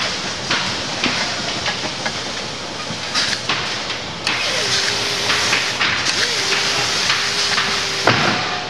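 Pneumatic fastening gun on an air hose, hissing and firing in short sharp bursts, over a steady hiss of factory machinery noise with a faint steady hum.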